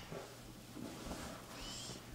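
Faint scratch of a Sharpie felt-tip marker tracing a line on craft felt, with a brief thin squeak near the end.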